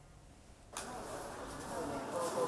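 Near silence, then about three-quarters of a second in a steady background ambience cuts in, with faint, indistinct voices in it.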